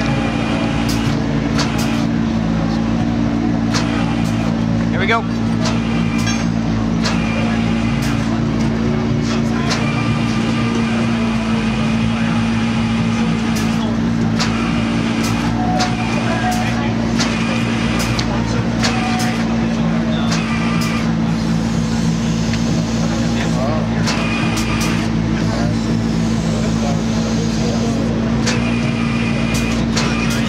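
Steady, unchanging drone from the flatbed tow truck running its bed hydraulics while the supercar is lowered down the tilted bed, with crowd chatter and scattered sharp clicks over it.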